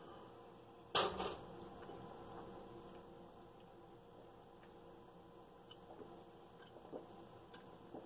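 A man drinking from a can held tipped up to his mouth. There is one short, sharp sound about a second in, then mostly quiet, with a few faint small gulping sounds near the end.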